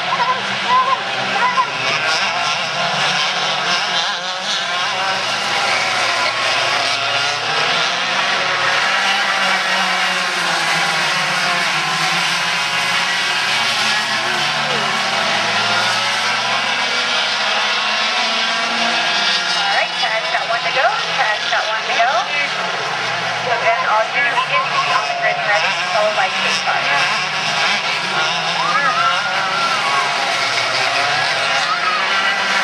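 Several racing go-kart engines running hard on track, their whine rising and falling in pitch again and again as the karts accelerate, lift off for corners and pass by.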